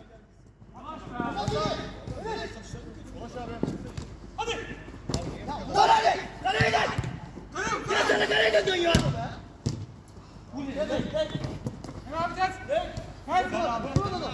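Men shouting and calling out during a five-a-side football game, with a few sharp thuds of the ball being kicked on artificial turf.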